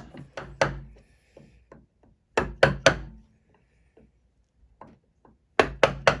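Wooden mallet striking a wood chisel as it cuts small curled chips into a branch, in quick sharp taps. The taps come in three bunches of two to four, the loudest near the middle and at the end, with faint ticks between them.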